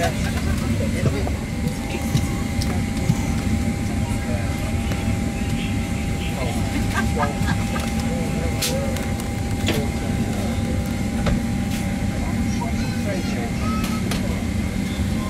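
Steady low cabin rumble inside a parked Boeing 767, with a faint steady tone through most of it. There is a low murmur of voices and scattered light clicks and knocks from the cabin.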